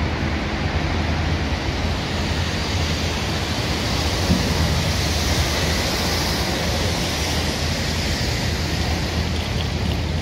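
Steady outdoor street noise: a continuous rush of traffic and wind on a phone's microphone, with no distinct events, swelling slightly around the middle.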